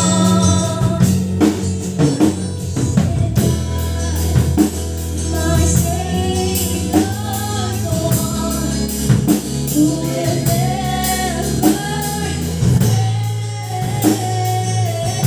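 A woman singing a gospel worship song into a microphone over instrumental accompaniment with a steady bass line and beat, amplified through a PA speaker.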